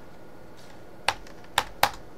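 Computer keyboard keystrokes: a few faint taps, then three sharp key clicks about a second in and near the end, as a password is typed and entered.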